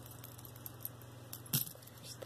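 Metal charms and chain links of a Lucky Brand charm bracelet clinking lightly as it is handled, with one sharper clink about one and a half seconds in.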